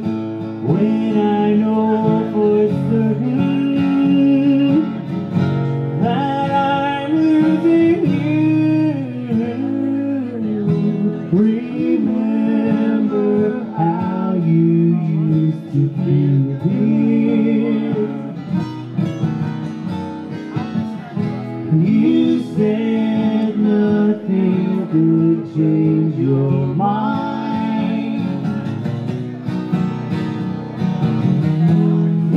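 Instrumental break of an acoustic country/bluegrass ballad: an acoustic guitar played flat on the lap takes the lead, its notes sliding and bending between pitches, over a second acoustic guitar played in rhythm.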